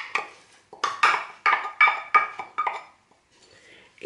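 A spatula scraping and tapping against a glass bowl as blended banana is emptied out: a quick run of about eight clinks, some with a short glassy ring.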